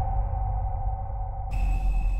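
Trailer sound design over the title card: a deep rumbling drone with a steady tone slowly fading, and about a second and a half in a high, ringing electronic tone comes in suddenly, like a sonar ping.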